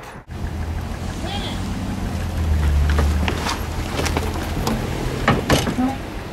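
A car engine running with a low, steady rumble that grows louder around the middle. Scattered clicks and knocks come in the second half.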